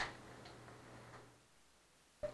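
A sharp click, then two faint ticks about half a second apart, over a low hum that starts with the first click and dies away after about a second and a half.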